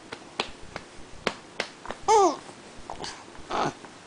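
A baby babbling: one short rising-and-falling vocal sound about halfway through and a short breathy sound later on. Faint sharp clicks are scattered throughout.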